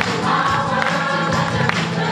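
A congregation singing a joyful gospel-style hymn together, with hand claps.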